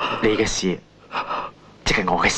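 A person's voice in short vocal sounds, with a sharp breathy burst about half a second in and another vocal sound starting just before the end.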